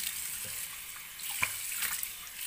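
Water running steadily from a bathroom tap into a ceramic basin, with a few short splashes as cupped hands throw water up to the face.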